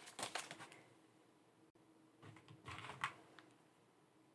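Faint handling of paper bills and a plastic binder pocket: light clicks and rustles in the first second, then a second cluster a little after the middle.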